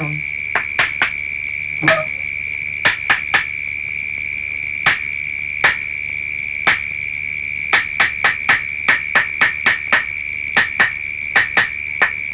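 Night insect ambience: a steady, high-pitched cricket drone, with sharp clicks that come unevenly, from single ticks to runs of several a second.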